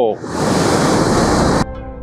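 Steady rush of falling water from Hukou Waterfall on the Yellow River. It cuts off suddenly about one and a half seconds in, and plucked-string background music starts.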